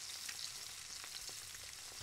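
Faint, steady sizzling and light crackle from a saucepan of barbecue sauce heating on the stove, with a bacon-and-thyme bundle rendering in it.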